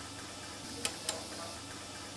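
Two light clicks about a quarter second apart as a punched film strip is slid into the program tape reader of a Zuse Z3 replica, over a faint steady hum.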